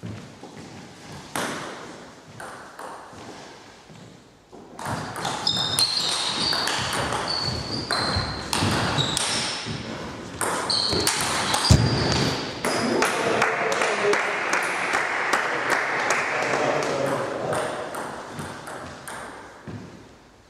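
Table tennis ball clicking off bats and the table in quick rallies, the hits echoing in a large hall, with voices in the background.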